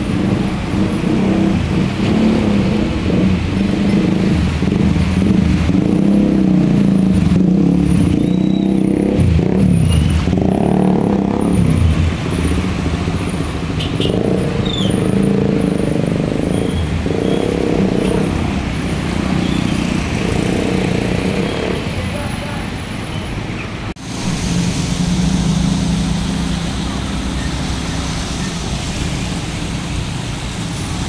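Motor scooter engines running one after another as the bikes wade through a flooded street, with water sloshing and splashing around their wheels. The sound changes abruptly about two-thirds of the way through.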